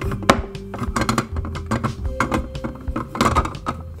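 Hard plastic puzzle pieces, each a cluster of joined balls, clicking and knocking against each other and the triangular tray as they are handled and fitted together, many quick clacks throughout. Background music plays underneath.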